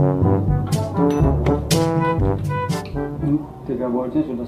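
Background music: brass instruments playing a lively tune over a drum beat.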